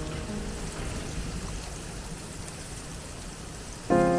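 Steady hiss of water running in a reflecting-pool water feature. Soft background music notes fade out about half a second in, and a loud piano chord is struck just before the end.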